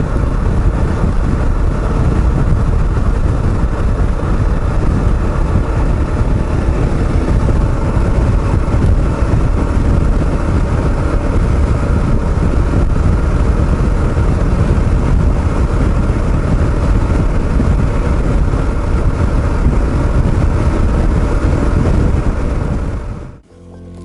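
Steady wind rush and engine drone of a Kawasaki KLR650 cruising at highway speed, heard from the rider's helmet. It fades out about a second before the end.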